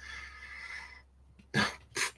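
Faint microphone hiss, then about one and a half seconds in a man's single short cough.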